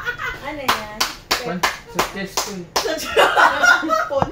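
A run of about eight sharp hand claps over some two seconds, roughly three to four a second, mixed with laughing voices.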